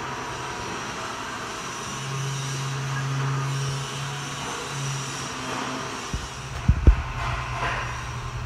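Steady running noise of a Haas VF-2 CNC vertical mill stopped in a tool-changer alarm. A low hum comes up for about two seconds and then briefly once more, and a few sharp knocks come near the end.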